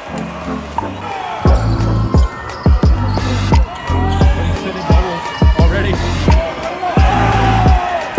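A basketball being dribbled on a hardwood court, a run of sharp bounces about two a second, with sneakers squeaking now and then, over arena music and crowd chatter in a gym.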